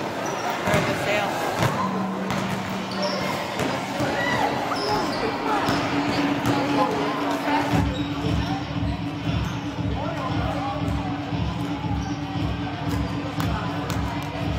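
Basketballs bouncing on a wooden gym floor in a large hall, with scattered bounces at first and then a steady dribble of about two thumps a second in the second half, under the chatter of people in the gym.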